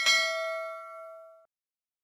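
A single bright, bell-like ding from an end-screen notification-bell sound effect. It strikes sharply and rings out with several tones, fading away after about a second and a half.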